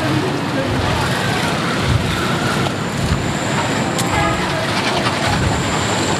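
Steady street noise: traffic rumble with indistinct voices in the background. A thin high whine comes in about halfway through.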